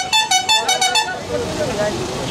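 A vehicle horn honked in a rapid series of short toots that stops about a second in, from traffic held at a standstill, with people's voices in the background.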